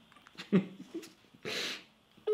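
A few brief, faint human vocal sounds: a short falling voiced sound about half a second in, then a breathy puff about a second and a half in.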